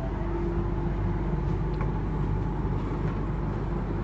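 Steady low rumble of background room noise, with a faint hum early on and a few faint clicks.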